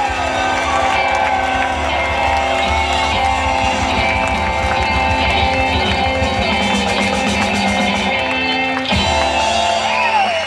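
Live rock band playing loudly, with electric guitars and drums.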